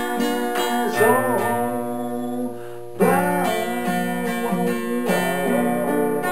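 Acoustic guitar, laid across the reclining player's chest, strummed in slow, ringing chords; a brief lull just before a louder strum about halfway through.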